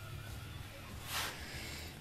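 Faint, steady low hum of a windshield-wiper motor driving a small mill's table as a power feed, running quietly, with one soft brief swell of noise about a second in.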